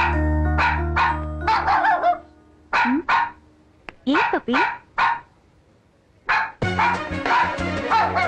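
Small white spitz-type dog barking: a run of short barks, several in quick succession. Background music plays under the first two seconds, drops out while the dog barks alone, and comes back near the end.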